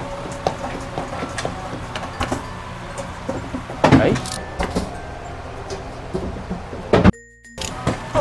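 Background music with scattered clicks and knocks from a claw machine being played. A louder knock comes about four seconds in and another near the end, followed by a brief cut-out of all sound.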